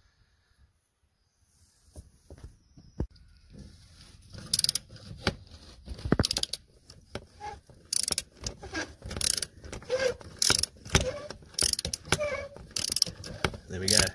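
A 3/8-inch drive ratchet on a 15 mm socket and extension bars working a stiff, part-seized catalytic converter exhaust bolt back and forth. It starts about four seconds in as bursts of quick ratchet clicks, broken by short pauses, and keeps on that way.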